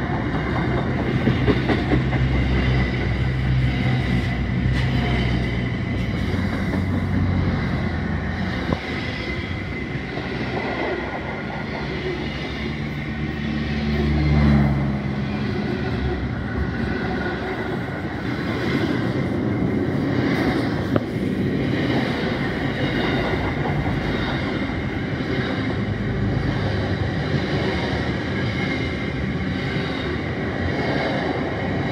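Container wagons of a long freight train rolling past close by: a steady rumble of wheels on rail with a few sharp clicks. A lower drone in the first half fades out about fifteen seconds in.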